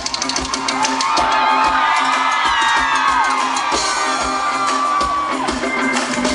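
A live pop-rock band plays loudly with electric guitar, and the audience screams and whoops over the music.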